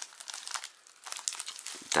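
Clear plastic bag crinkling as it is handled, a run of irregular small crackles.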